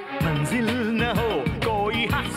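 Hindi film dance song: a voice sings a melody with gliding, wavering notes over a steady beat.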